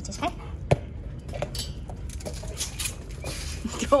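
Dog mouthing and snuffling at a slippery ball on concrete: scattered small clicks and short wet scuffs, with a sharper click a little under a second in.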